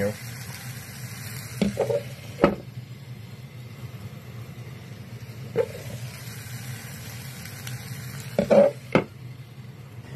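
Bacon-wrapped chicken and jalapeño slices sizzling steadily on a hot steel skillet plate, with a few sharp knocks. A louder clatter near the end as a plastic bowl is set down over the food on the metal.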